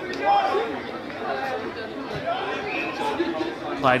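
Several voices talking over one another, a background chatter of people picked up by the pitchside microphone, loudest just after the start.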